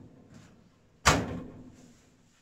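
The metal oven door of an Uğrak wood-burning kitchen stove being shut, a single sharp clack about a second in that rings and fades away, with a faint click just before.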